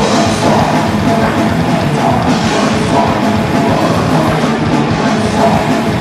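Heavy metal band playing live: distorted electric guitars over a drum kit, loud and continuous.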